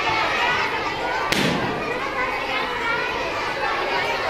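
Many overlapping voices of adults and children chattering in a crowded room, with one sharp knock about a second in.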